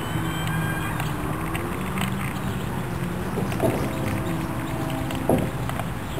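A low motor hum that shifts up and down in pitch in small steps, with a couple of short knocks in the second half.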